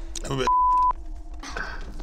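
A short, steady electronic beep, one pure tone lasting under half a second, cutting off abruptly, between bits of speech: a censor bleep masking a spoken word.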